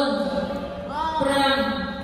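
A man's voice calling out in long, sing-song phrases, each one arching up and falling to a held low note, about every second and a half.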